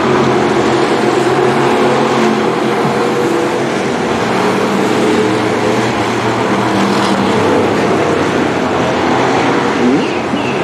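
Dirt-track stock car engines running as the cars circle the oval, a steady drone with little rise or fall in pitch.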